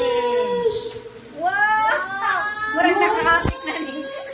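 Young children's high-pitched excited voices, calling and squealing in short rising cries.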